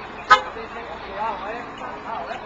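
A single short toot of an ambulance's horn, sharp and loud, about a third of a second in.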